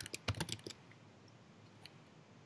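A few quick computer keyboard keystrokes in the first half-second or so, then quiet room tone with one faint click near the end.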